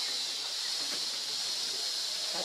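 A steady, high-pitched hiss of insects in the forest, with no breaks or strikes.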